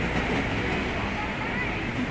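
City street ambience: a steady traffic rumble from cars at an intersection, with indistinct voices of passers-by.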